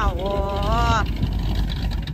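Classic American car's engine running with a low, steady rumble as the car pulls slowly away.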